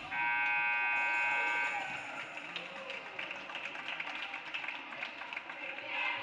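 Gymnasium scoreboard horn sounding for nearly two seconds as the game clock runs out, ending the third quarter. After it, voices and scattered knocks and squeaks carry through the hall.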